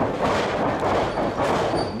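Steady wrestling-arena background: an even haze of indistinct crowd and hall noise, with no distinct impacts.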